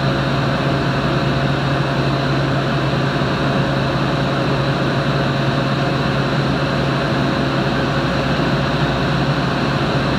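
Wind tunnel running steadily: a constant rush of air and fan noise with a low hum and a faint high whine, unchanging throughout.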